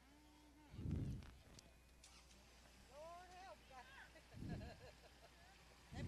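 Faint, distant voices of people talking, with two low muffled thumps, one about a second in and one about four and a half seconds in.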